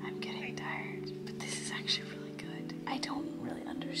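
A young woman whispering, breathy and unvoiced, over soft background music with steady sustained notes.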